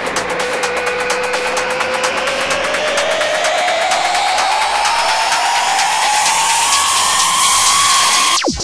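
Electronic trance track in a build-up. The beat stops right at the start, leaving a synth tone that climbs steadily in pitch over a swelling wash of noise, getting gradually louder.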